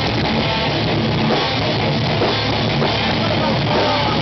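Live rock band playing loudly: electric guitars and a drum kit going on steadily without a break.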